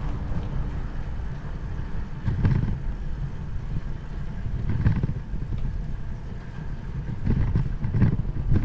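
Wind rumbling on the microphone of a 360° camera mounted on a moving bicycle, a low noise that swells and eases in gusts.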